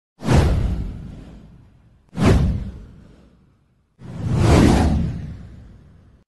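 Three whoosh sound effects in a title-card intro. The first two start suddenly and fade over about two seconds each. The third swells in about four seconds in and then fades away.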